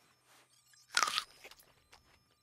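A single crisp crunch about a second in as a piece of fruit is bitten into, followed by a few faint chewing sounds.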